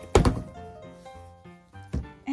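Two thunks of a plastic capsule ball being set down or knocked on a counter, the first just after the start and the loudest, the second near the end, over soft background music.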